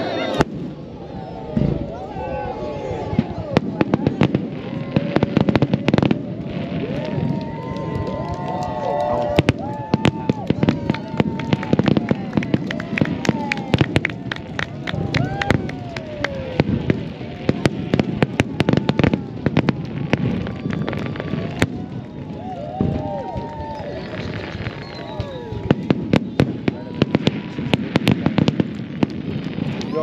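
Aerial firework shells bursting in a display, a dense run of sharp bangs and crackles one after another.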